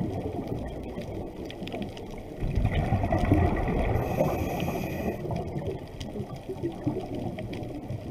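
Underwater sound through a GoPro housing: a muffled, bubbling rumble that grows louder about two and a half seconds in. A faint high whine sounds for about a second just past the middle.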